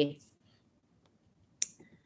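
A single short, sharp click about one and a half seconds into a pause, with a couple of fainter ticks just after; otherwise near silence.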